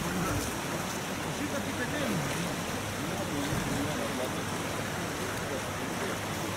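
Steady rush of wind and small waves lapping on a lake shore, with faint indistinct voices underneath.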